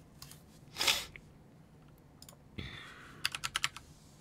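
Typing on a computer keyboard: a quick run of about six keystrokes near the end. A short rushing noise about a second in is the loudest sound.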